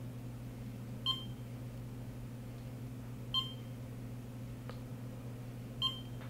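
Three short, high-pitched electronic beeps from a Flipper Zero, a couple of seconds apart. Each marks a Security+ 1.0 rolling-code signal received in Sub-GHz read mode. A steady low hum runs underneath.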